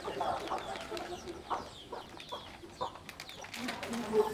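Chickens clucking in short, repeated calls, with faint high chirps scattered among them.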